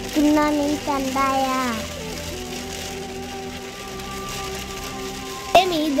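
A voice exclaims with rising and falling pitch, then background music holds one steady note for about three seconds, over rain pattering on a car windshield. A sharp click comes near the end, just before talking resumes.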